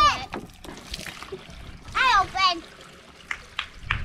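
Water splashing and pouring from a toy water table's hand pump as a child works the handle, with a few sharp clicks near the end. A child's high voice cuts in briefly about halfway through.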